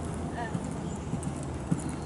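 Horse cantering on a sand arena: dull, irregular hoofbeats in the soft footing.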